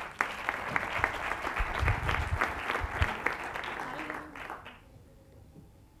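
Audience applauding, fading out about four and a half seconds in.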